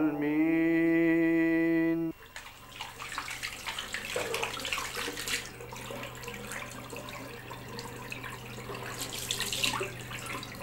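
A man's chanted note, held steady, cuts off abruptly about two seconds in. Then water runs from a tap into a sink, with irregular splashing, over a faint steady hum.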